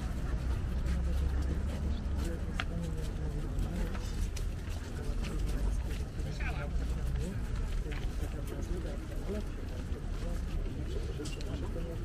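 City street background noise while a group walks along the pavement: a steady low rumble of traffic, with scattered quiet voices of people talking among themselves.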